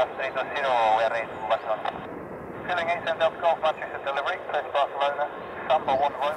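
Air traffic control radio voices heard through an air band scanner, thin and narrow-sounding, talking almost without pause. Faint aircraft noise sits underneath.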